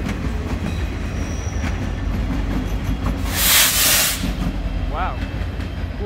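Freight train rolling past at close range, its cars and rear locomotives giving a steady low rumble over the rails. A loud hiss about three and a half seconds in lasts under a second and is the loudest sound.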